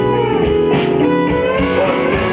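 Live rock band playing an instrumental passage, electric guitar to the fore with bending notes over keyboards and drums, without singing.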